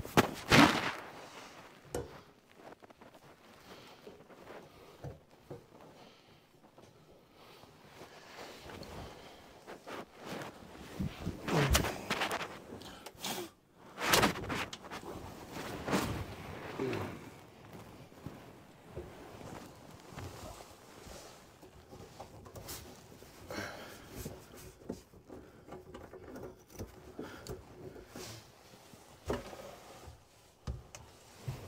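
Plastic sink drain pipes, the garbage disposal and hand tools being handled under a kitchen sink, with irregular knocks, clunks and scraping as the drain is taken apart. The loudest knocks come at the very start and again at about 12, 14 and 16 seconds in.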